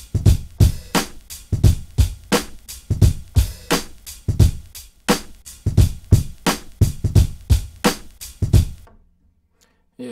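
Lo-fi boom bap drum loop, programmed on an Akai MPC1000, playing back: a swung groove of heavy kick and snare hits. It stops about nine seconds in.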